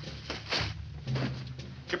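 A cloth money sack set down on the floor, one short rustle about half a second in, over a low steady hum that grows louder about a second in.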